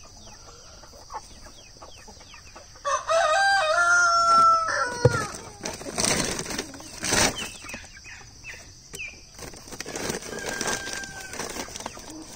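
A rooster crows once about three seconds in, a held call of about two seconds that slides down at the end. A few seconds later comes a short burst of wing flapping, with scattered clucks from chickens around the coops.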